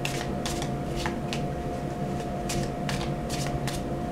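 A deck of tarot cards shuffled in the hands: a run of quick, irregular card snaps, about a dozen, over a steady low hum.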